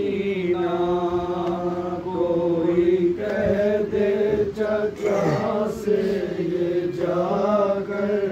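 Men chanting a nauha, an unaccompanied Urdu lament of Muharram mourning. They sing long held notes that slide from pitch to pitch, with no instruments.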